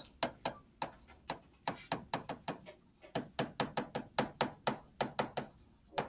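Stylus writing on a tablet screen: a quick, irregular run of light tapping clicks, about four or five a second, as the words are handwritten.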